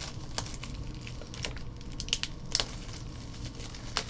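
Foil wrapper of a trading card pack crinkling and tearing as it is pulled open by hand, with several sharp crackles.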